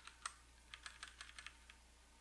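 Faint clicks of computer keyboard keys tapped one after another while stepping through menus: a couple of taps, then a quick run of about eight.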